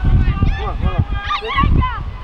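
Short shouted calls from several voices across a football pitch, overlapping one after another, with wind buffeting the microphone.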